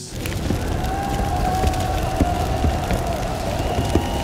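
Cinematic soundtrack under an animated battle image: a steady, dense rumbling wash with a faint held tone over it.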